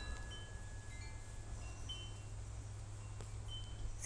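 Faint high chime tones ringing out at scattered moments, each fading away, over a low steady hum.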